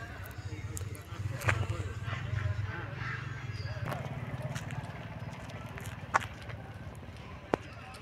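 Outdoor ambience: faint, indistinct voices over a steady low rumble, with three sharp clicks, about a second and a half in, about six seconds in and near the end.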